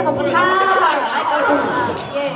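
Voices talking, one of them through the vocal microphone, as the band's last held chord cuts off right at the start.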